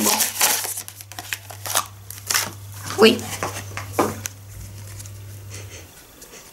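Packaging crinkling and rustling in short bursts as a silicone muffin mould is unwrapped by hand, quieter after about four seconds, over a faint steady low hum.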